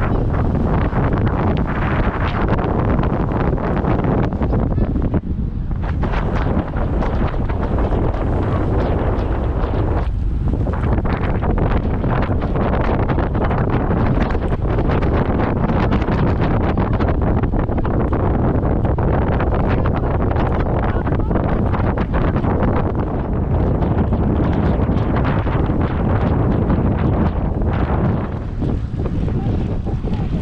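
Loud, steady wind noise buffeting the microphone of a camera on a moving road bike, dipping briefly about five and ten seconds in.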